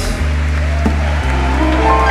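Live jazz band music led by an upright double bass playing long, low held notes that change pitch about once a second, with quieter sustained chords above.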